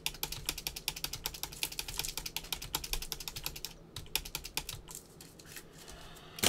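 Typing on a computer keyboard: quick runs of sharp key clicks that thin out after about four seconds.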